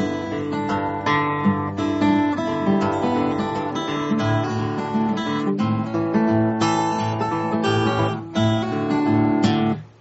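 Steel-string acoustic guitar fingerpicked in country-blues style, the thumb picking regular bass notes under the melody, an 11-bar blues in the key of D; the playing stops just before the end.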